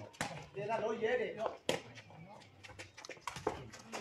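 People talking, with several sharp cracks of the sepak takraw ball being kicked back and forth during a rally.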